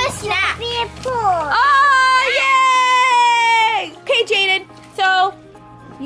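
A young child's high voice, ending with one long drawn-out note held for about two seconds that then slides down, with music playing.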